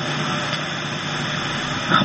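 Steady background hiss with a faint low hum, even throughout, in a pause of amplified speech.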